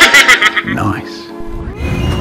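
A horse whinny sound effect edited in with a meme clip: a loud, high, wavering call that trails off within the first half second, followed by music.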